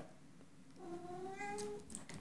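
A domestic cat meowing once: a single drawn-out, slightly rising meow that starts about a second in. The cat is unhappy about something.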